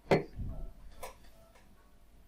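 A stemmed wine glass set down on a tabletop: a sharp knock of the glass foot on the table just at the start, then a fainter click about a second later.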